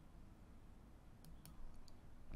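A few faint clicks in the second half over near silence: a computer mouse clicked to advance the presentation slide.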